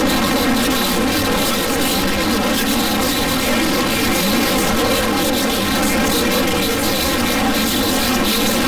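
A loud, steady drone with a fixed buzzing pitch, running without a break or a beat.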